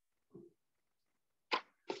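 A mostly quiet gap, with a faint short knock about a third of a second in and a brief papery hiss near the end as a printed paper sign is picked up and handled.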